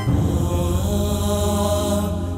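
Background music: the pulsing melody gives way at the start to a steady low drone with long held tones above it.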